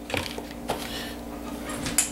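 A few light plastic knocks as a red perforated sifter insert is set down into a plastic mixing bowl, the sharpest near the end.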